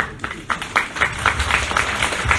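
A small audience clapping, starting about half a second in.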